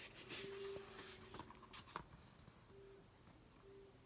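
A picture-book page being turned by hand: a soft paper rustle about half a second in, then a couple of faint clicks, in otherwise near silence.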